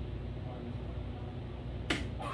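A soft-tip dart hitting an electronic dartboard with one sharp click near the end, registering a bull (25 points), over a steady low background hum.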